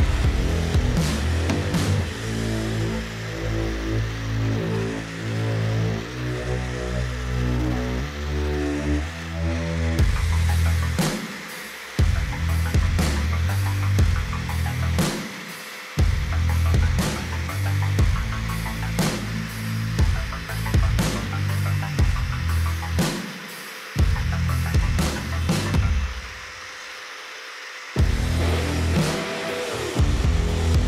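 Electronic background music with a heavy bass line and a steady beat. It drops out suddenly for a moment several times.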